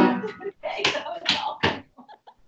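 People laughing over a video call: a loud burst of voice at the start, then several short bursts of laughter.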